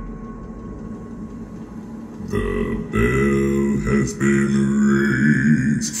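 A very deep bass male voice singing a slow, sea-shanty-style melody with long held notes, starting about two seconds in after a low fading rumble.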